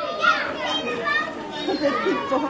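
Children's voices calling and chattering, several overlapping.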